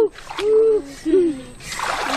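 A series of short hooting calls, four or so in quick irregular succession, each rising and falling in pitch. Near the end comes a splash of water in a shallow stream.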